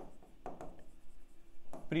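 Stylus writing by hand on an interactive display screen: short rubbing strokes, with a sharp tap near the end.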